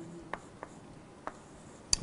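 Writing on a board during a lecture: a few short soft taps, then a sharper click just before the end.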